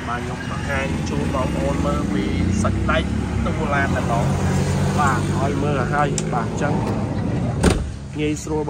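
A motor vehicle's engine running steadily, a low even drone, with faint voices over it. A single sharp knock sounds near the end.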